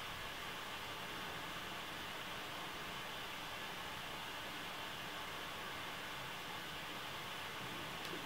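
Steady faint hiss of room tone, unchanging and with no distinct sounds in it.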